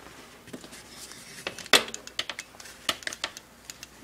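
Irregular small clicks and light knocks from a white plastic stick blender being handled and its switch pressed, with no motor starting: the blender is dead.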